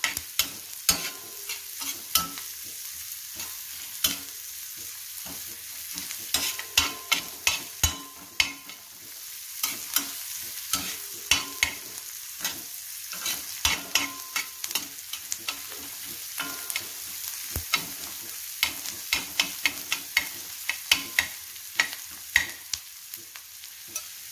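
Chopped onions sizzling in oil on a flat tawa, with a spatula scraping and tapping against the pan in quick, irregular strokes.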